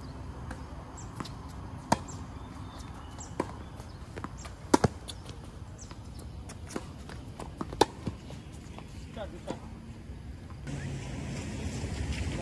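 Tennis ball struck by rackets and bouncing on a hard court during a rally: a series of sharp pops spaced a second or more apart, the loudest a quick double pop near the middle.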